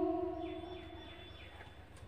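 A sustained pitched tone, steady in pitch with a rich set of overtones, fading away over the first second and a half or so.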